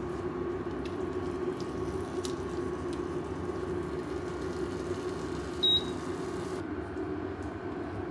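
Pork belly and onion sizzling in a frying pan, stirred with a silicone spatula that scrapes and taps the pan now and then, over a steady low hum. About two-thirds of the way in a single short high beep sounds, and soon after the sizzle stops.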